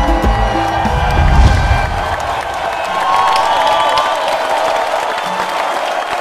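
Music with a bass beat that drops away after about two seconds, leaving studio audience cheering and applause.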